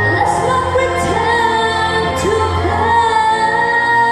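A girl singing a song into a microphone, holding long wavering notes, backed by guitar.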